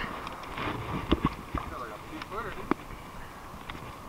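Scattered sharp knocks and scuffs on rock, irregular and about half a dozen in all, over a steady hiss of surf and wind; a faint voice comes in briefly past the middle.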